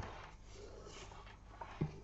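Soft rustling of a hand-knitted angora-blend sweater being handled and folded while a seam is sewn by hand, with a small click at the start and a short soft thump near the end.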